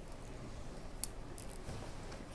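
Quiet room tone with a low background hum and one short, sharp click about a second in.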